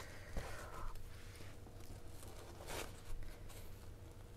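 Faint rustle and crackle of a baked börek's crust being torn apart by hand on a wooden cutting board, with a soft knock about half a second in and another short crackle near the end.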